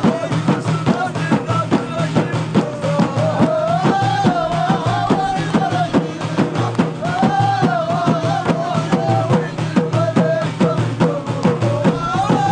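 Ahidous, Amazigh folk music: a chorus of men singing in unison over a steady rhythm beaten on hand-held bendir frame drums. The sung phrases rise and fall and repeat every few seconds.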